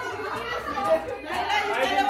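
Indistinct chatter of several people talking at once, party conversation with no one voice standing out.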